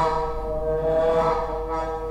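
A brass instrument holding a long, steady note, with a lower sustained tone underneath; the note swells a little about a second in and eases off near the end.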